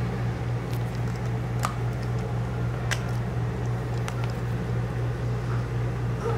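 A steady low hum fills the room, with a few faint clicks as the lace, tape measure and marker are handled.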